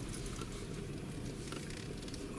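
Low, steady rumble of a car moving slowly, heard from inside the cabin.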